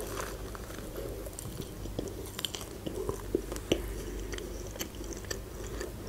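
A bite into a shawarma wrap, then close-miked chewing with small scattered wet clicks.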